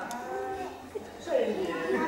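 A man's voice in long, drawn-out vowels. It holds steady for about a second, then slides down in pitch.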